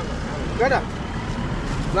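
Low rumble of road traffic as a car and a scooter pass, with a voice briefly calling out about two thirds of a second in.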